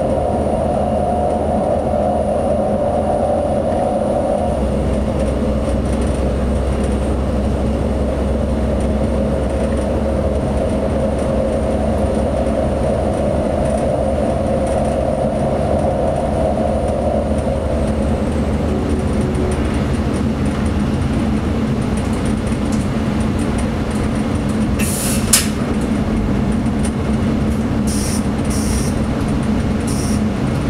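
ČD class 842 diesel railcar running at speed, its engine drone and wheel-on-rail noise heard from the driver's cab. The engine note shifts about four seconds in, and a higher drone fades out later. A single sharp click sounds near the end.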